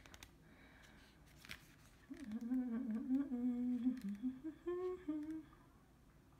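A woman humming to herself, a wavering tune of a few drawn-out notes that starts about two seconds in and lasts about three seconds.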